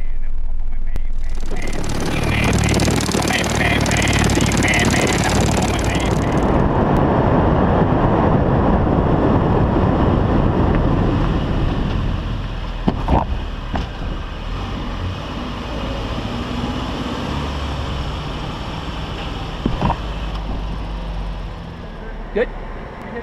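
Car driving with wind and road noise in the cabin, a loud rush of wind from about two to six seconds in. The noise drops after about twelve seconds as the car slows, with a few sharp knocks, one about thirteen seconds in and one near the end.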